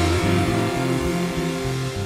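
Live worship band music ending on held chords, with low bass notes under sustained instrument tones, slowly getting quieter.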